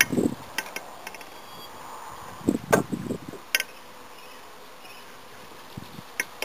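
Honeybees buzzing steadily around an open hive, with several sharp knocks and clicks as wooden frames and hive parts are handled, the loudest a little under three seconds in.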